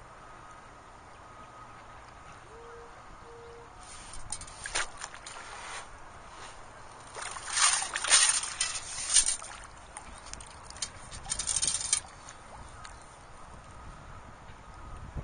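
Long-handled beach sand scoop with a perforated basket plunged into the sandy bottom of shallow water and shaken, water and sand sloshing and draining through it in uneven bursts. It starts about four seconds in and is loudest around the middle, with a last burst a little later.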